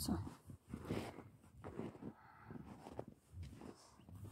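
Footsteps in snow: a run of uneven, fairly quiet crunches as someone walks through it.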